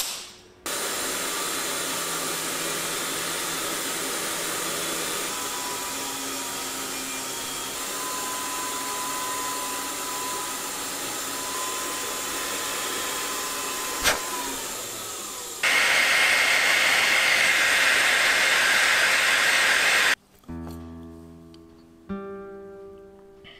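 A jeweller's rotary handpiece with a small disc runs as a steady hiss with a faint whine, with one sharp click near the middle. Several seconds later it gives way to a louder, brighter hiss that cuts off suddenly, and guitar music starts near the end.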